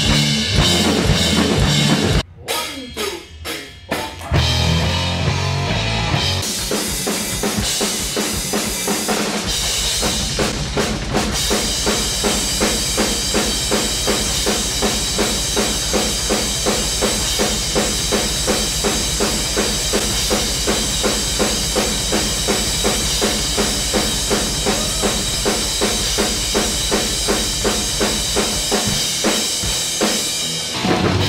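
Drum kit played hard: loose hits and fills in the first few seconds, then from about ten seconds in a steady, fast beat driven by a rapid bass drum, with accents about twice a second.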